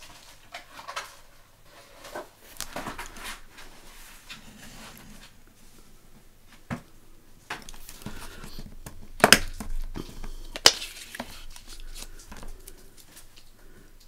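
Craft scalpel scoring and cutting through paper along an acrylic quilting ruler on a cutting mat, with light scraping strokes and rustling as the paper is handled. A few sharp clicks come in the second half, the loudest two about a second and a half apart.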